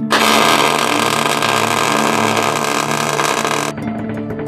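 Wire-feed (MIG) welder arc running in one continuous bead, a loud steady hiss that starts at once and cuts off suddenly near the end.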